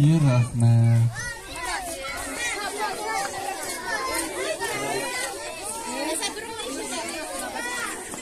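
A loud low final note from the dance music in the first second, cutting off about a second in. After it, a crowd of young children chattering and calling out over one another.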